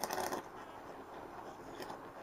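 High-voltage arc from a MOSFET-driven flyback transformer, drawn between two wire ends: a brief louder crackle near the start, then a faint steady hiss as the arc burns.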